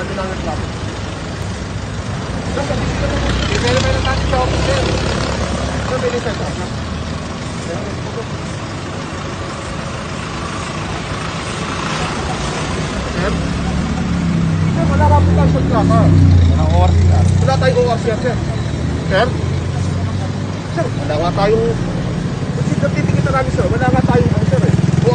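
Indistinct talking between voices over the steady low hum of a stopped vehicle's running engine; the voices grow livelier in the second half.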